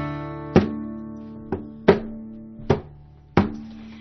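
Guitar playing a song's intro: chords struck one at a time, each left to ring and fade before the next, a handful of strokes spaced roughly half a second to a second apart.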